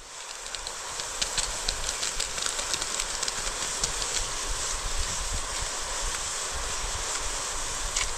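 Water at a rolling boil in a wide wok over a wood fire: a steady bubbling hiss with many small pops and crackles, swelling over the first second.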